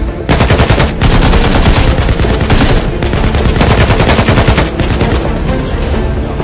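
Rapid automatic gunfire in several long bursts with brief breaks, starting just after the opening.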